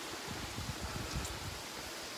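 Steady rush of water from a nearby waterfall and stream, with irregular low thuds from the phone being carried while walking.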